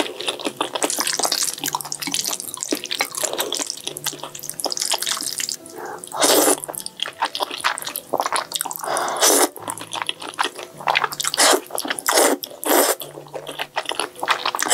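Close-miked wet mouth sounds of eating thick noodles in black bean sauce: steady sticky chewing with a run of small wet clicks, broken by several louder slurps as strands are drawn into the mouth.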